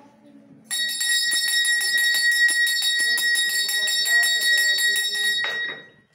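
Puja hand bell rung rapidly and steadily, several strikes a second, with a bright, sustained ring. It starts about a second in and stops abruptly near the end.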